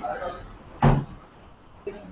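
A single dull thump, a short knock of something being handled or set down, a little under a second in, with a faint click near the end.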